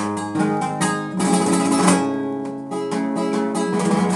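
Acoustic guitar played in flamenco style, with no singing: a passage of plucked notes broken by several sharp strummed chords.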